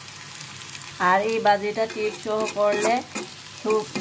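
Sliced onions sizzling as they fry in oil in an iron karahi, with a spatula scraping through them. From about a second in, a voice sounds over the frying, on and off to the end.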